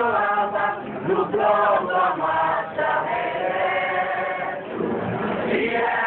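A group of people singing together in chorus, the voices holding long, sustained notes.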